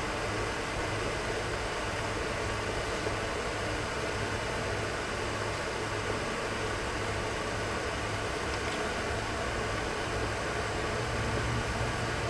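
Steady background noise: a low, even hum under a constant hiss, with no distinct events.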